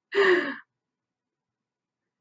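A woman's breathy sigh, about half a second long, falling in pitch.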